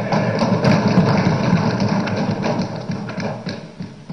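Assembly members applauding by thumping their wooden desks and clapping: a dense patter of many knocks that fades away near the end.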